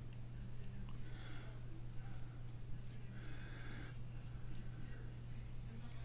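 Precision screwdriver turning a small screw in a folding knife's titanium handle: faint, irregular scratching and small ticks from the driver bit, over a steady low hum.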